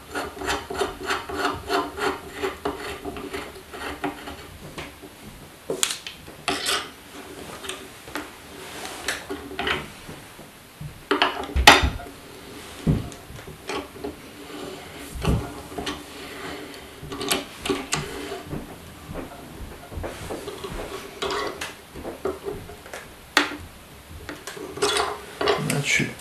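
A metal bearing locking ring being screwed down the threaded shaft of a telescope mount's RA axis, first spun by hand with a fast rubbing of thread on thread. It is then snugged up with a screwdriver levered in the ring's hole, giving scattered sharp metal clicks and knocks, the loudest about halfway through. The ring is being driven tight enough to take the play out of the shaft's bearing.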